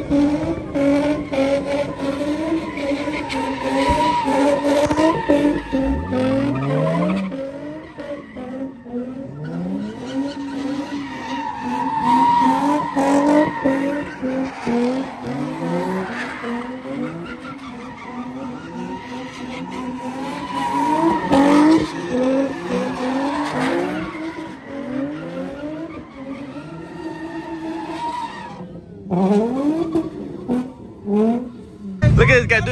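Cars doing donuts: engines held high in the revs with repeated short rises, over continuous tyre screeching.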